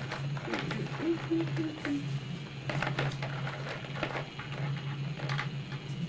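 Small plastic counting bears clicking and rattling as they are picked out of a box of bears and set down on a table, a scatter of short sharp clicks.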